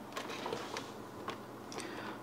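Faint, scattered light clicks and taps from the plastic stand of a Dell Inspiron 3477 all-in-one as it is handled and lined up with the holes in the computer's back cover.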